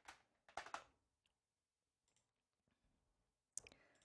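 Near silence broken by a few faint short clicks: a small cluster about half a second in and a single one near the end.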